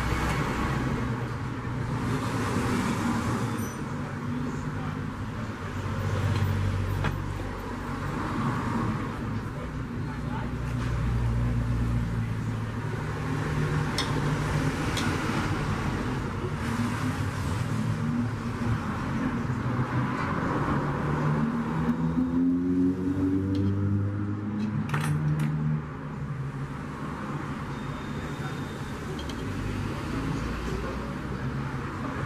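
Steady rumble of road traffic, with motor vehicles passing and one engine rising in pitch as it speeds up about three-quarters of the way through. A few light metallic clicks of hand tools on the aluminium pressure-cooker lid come over it.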